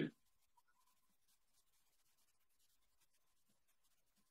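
Near silence on a video call: the last syllable of speech cuts off at the very start, then the line drops almost to nothing.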